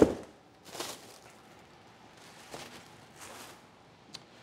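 A cardboard box tossed aside lands with a single thump, followed by a few faint scuffs over the next few seconds.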